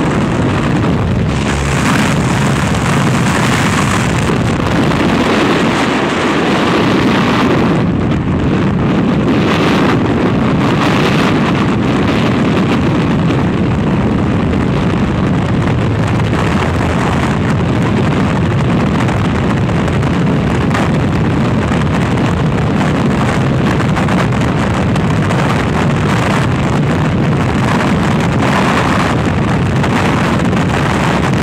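Jump aircraft engine and door noise heard from inside the cabin, giving way to continuous freefall wind noise buffeting the skydiving camera's microphone.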